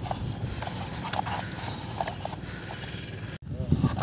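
Plastic toy backhoe loader's bucket pushed and scraping through damp sand, with scattered small knocks and crunches. The sound drops out for a moment about three and a half seconds in, then comes back louder.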